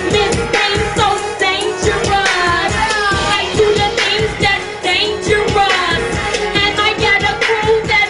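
Loud live music: a woman singing into a handheld microphone over a backing track with a steady beat, in repeated melodic phrases.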